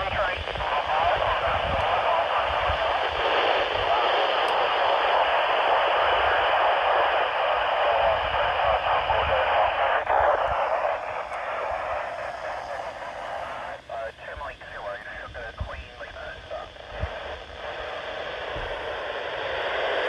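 AO-91 satellite's FM downlink through a Yaesu FT-470 handheld's speaker: narrow-band hiss with garbled voices of stations calling through the satellite. About halfway through the signal grows weaker and choppy, fading in and out.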